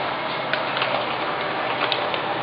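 A sheet of A4 paper being folded and creased by hand, giving a few short, irregular crinkles and clicks over a steady hiss.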